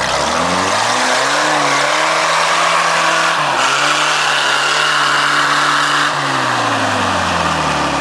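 Trial jeep's engine revving hard under load as it climbs a steep dirt slope: the revs rise in the first second, are held high, then fall away over the last two seconds.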